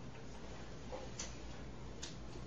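A couple of faint clicks and taps from a student shifting at a school desk, about a second in, over a steady low room hum.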